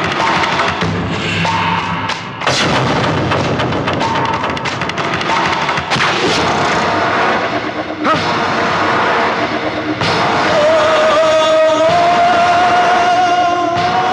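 Dramatic film background score: driving drums and percussion punctuated by sharp, loud hits, with a long held high tone over the last few seconds.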